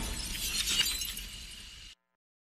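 Glass shattering sound effect: shards tinkling and scattering, fading out and then cutting off abruptly.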